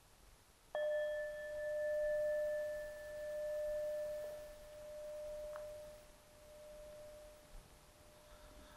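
A metal singing bowl struck once with a mallet about a second in, then ringing on with a clear tone that pulses slowly in loudness as it fades. The bell marks the start of a period of silent meditation.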